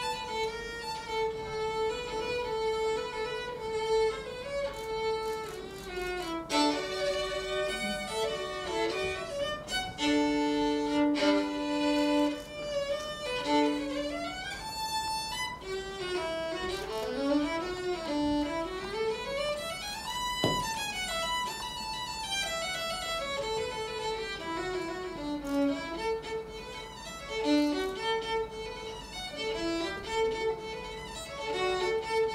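Solo violin played with the bow: a single melody moving between held and quicker notes, with fast runs that climb to a high note about two-thirds of the way through and then descend again.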